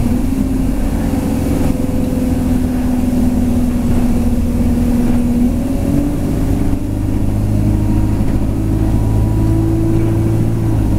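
Bus engine running under way, heard from inside the passenger cabin as a steady low drone with road rumble; its note steps up in pitch about six seconds in and again near the end.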